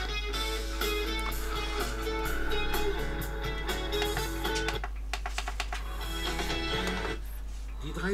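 Guitar-led music playing back from a CD through the built-in speaker of a Reflexion portable DVD boombox.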